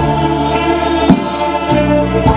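Live indie band playing sustained chords on electric guitars, with drum hits, the loudest about a second in.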